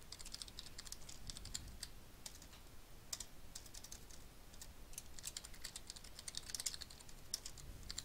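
Computer keyboard being typed on: a faint, irregular run of key clicks.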